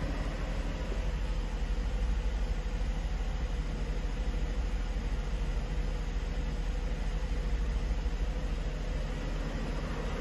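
1994 Mercedes-Benz E320's 3.2-litre straight-six engine idling steadily at about 1000 rpm, still cold after a cold start.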